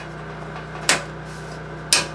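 Circuit breakers in a house breaker panel being switched on one at a time: two sharp snapping clicks about a second apart, over a steady low hum.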